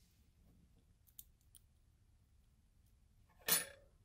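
Faint light clicks of steel digital-caliper jaws being slid and closed onto a tiny ball bearing, followed near the end by one short, louder rush of noise.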